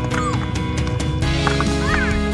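Background music with a steady beat, and a couple of short high squeaks that rise and fall over it, one near the start and one near the end.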